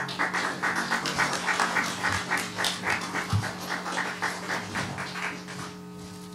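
Audience applause: a small crowd clapping quickly and fairly evenly, dying away near the end, over a steady low hum.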